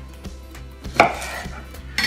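Chef's knife cutting a small pickling cucumber on a wooden cutting board: a few light cuts and one sharp knock of the blade on the board about a second in.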